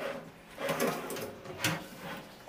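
Kitchen drawers holding stainless-steel wire baskets rattling as they are handled and slid on their metal runners. There are two sharp clicks, one about two-thirds of a second in and a louder one near the end.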